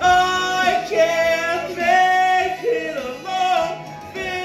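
A man belting long, held notes of a musical-theatre song over a backing track, moving to a new note about once a second.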